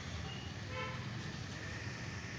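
A steady low rumble with a brief pitched toot about three-quarters of a second in.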